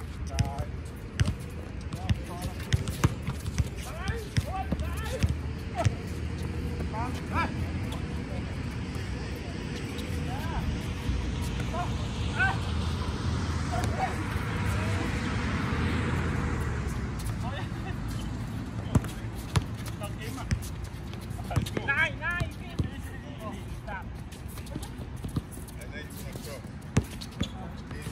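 A basketball being dribbled and bounced on an outdoor hard court, with sharp repeated thuds, among players' footsteps and distant shouts. Around the middle a broad rushing noise swells and fades over several seconds.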